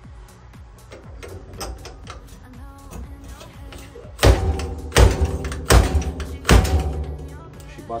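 Fork seal driver striking four times, about 0.7 s apart, driving a new oil seal down into the outer tube of a Showa BFF motorcycle fork, with a short metallic ring after each blow. Quiet background music runs underneath.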